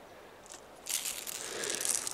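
Faint at first, then from about a second in a crunching, rustling noise of someone moving through snow, growing louder toward the end.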